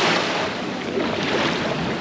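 Surf washing onto the beach, heard as a steady rushing noise with wind on the microphone; the rush is strongest right at the start.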